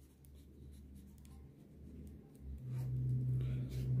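Blue ballpoint pen scratching across paper as a word is written out by hand. A low steady hum comes in about halfway through and grows louder.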